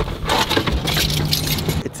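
Keys jangling, with a thump at the start and rustling handling noise over a low steady hum.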